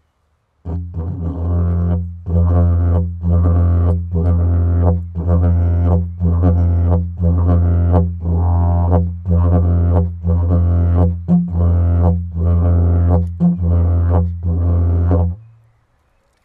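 Didgeridoo played with a continuous low drone, its upper overtones pulsing in an even, repeating rhythmic pattern; it starts about half a second in and stops just before the end.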